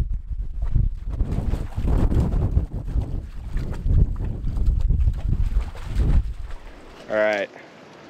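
A dog wading in the water of a tractor-tire stock tank, sloshing and splashing irregularly for about six seconds.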